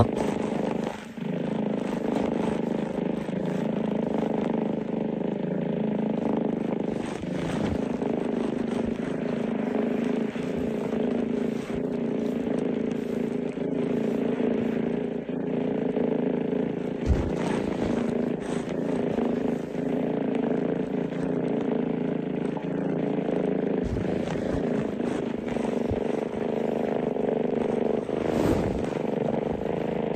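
A steady low drone with a hum in it, broken by a couple of brief low thumps past the middle.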